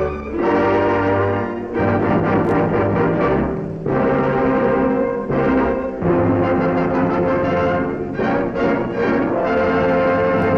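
Orchestral closing music: loud held brass chords over timpani, moving from one sustained chord to the next every second or two.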